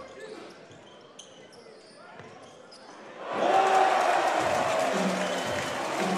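Basketball game sound from the arena: the ball bouncing and players' shoes on the hardwood court over a subdued crowd. About three seconds in, the crowd suddenly gets loud, a burst of cheering that stays up through the rest of the play.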